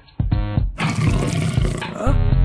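Cartoon monster roar sound effect, a rough, noisy roar lasting about a second from just under a second in, over background music.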